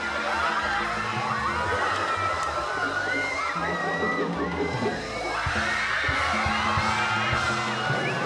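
Background music with a steady bass line, under a studio audience shouting and cheering.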